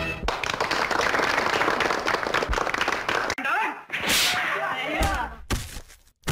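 Old film soundtrack: a music track stops at the start, followed by a few seconds of dense noisy commotion, then brief voices and a couple of sharp smacks like film fight blows.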